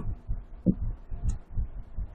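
A pause in a man's talk filled with faint, irregular low thumps, with a brief voice sound about two-thirds of a second in.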